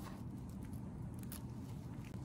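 Soft handling noise as gloved hands move and peel brain tissue on a plastic cutting board: a few faint ticks, the clearest about a second in, over a low steady room hum.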